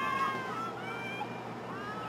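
Several high-pitched girls' voices shouting and calling at a distance, overlapping, loudest just after the start.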